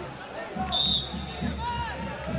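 Referee's whistle: one short blast about a second in, blown for the free kick to be taken, over distant shouting voices in the stadium.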